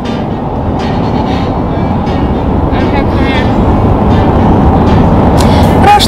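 Road and engine rumble inside a moving car's cabin, growing steadily louder, with faint voices behind it.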